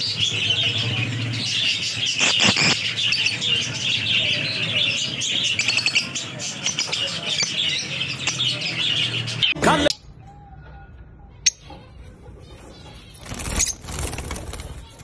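A flock of caged Fischer's lovebirds chattering, a dense, continuous mass of high-pitched chirps. The chatter cuts off suddenly about ten seconds in, leaving a quieter stretch with a few clicks and a brief flutter of wings near the end.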